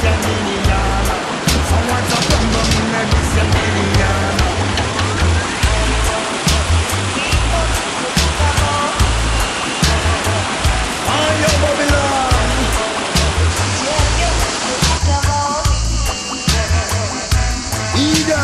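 Reggae song's instrumental backing with a steady bass beat, mixed with the rush of whitewater rapids. The water noise falls away about three seconds before the end, leaving the music on its own.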